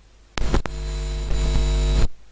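Loud electrical mains hum and buzz over the sound system, starting with two sharp clicks and cutting off suddenly after about a second and a half. This is the ground hum of a microphone or its cable being connected or switched on.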